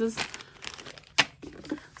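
Clear plastic bag of jigsaw puzzle pieces crinkling as it is handled, with one sharp click a little over a second in.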